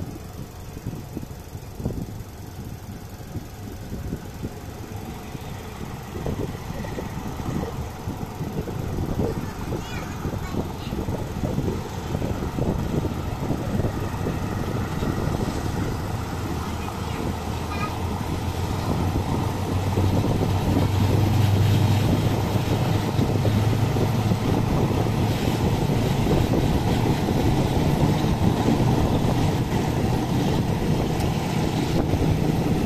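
A diesel-hauled passenger train pulling away and picking up speed, heard from an open coach window. The wheels clatter on the rails and a low running drone grows steadily louder, loudest in the second half, with wind on the microphone.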